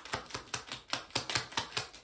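A deck of tarot cards shuffled by hand, the cards slapping together in a quick, uneven run of about five clicks a second.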